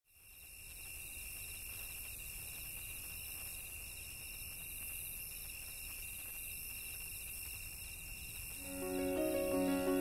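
Night insects calling: a steady high trill with a higher pulsed call repeating about once a second. Soft piano music comes in near the end.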